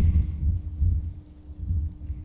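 Wind buffeting a handheld microphone: an uneven low rumble that rises and falls, with a faint steady hum underneath.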